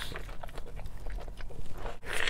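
A person biting into and chewing a mouthful of taco close to the microphone: a run of small, irregular mouth clicks and crackles.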